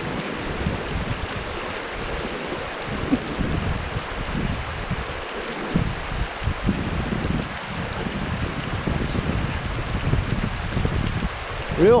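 Shallow, fast creek water running over a rocky bed, a steady rushing with an uneven low rumble underneath.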